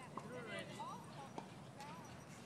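Tennis ball struck by racquets and bouncing on a hard court: faint hollow knocks, the two sharpest near the start and about a second and a half in.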